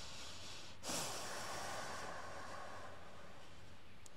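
A person breathing audibly: a sudden exhale about a second in that fades away over a second or two, over a steady background hiss.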